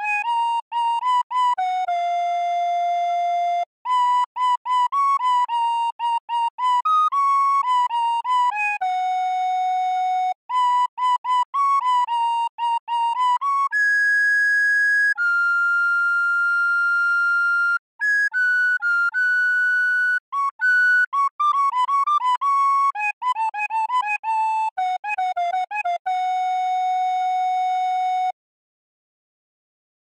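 Solo recorder playing a folk melody in short separated notes, broken by a few long held notes, and ending on a long held note shortly before the end.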